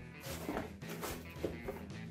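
Soft background music with sustained notes, and faint rustling of a cardboard box being handled and opened.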